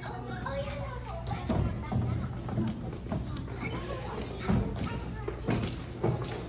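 Children's voices and chatter echoing in a large hall, with a few dull thumps and a steady low hum underneath.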